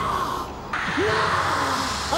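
Eerie soundtrack effects: short wailing cries that bend up and down in pitch, over a rushing hiss that drops out briefly and comes back louder a little under a second in.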